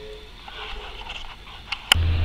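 Quiet room tone with faint, indistinct low-level noises, broken near the end by a single sharp click where the recording cuts to the next scene.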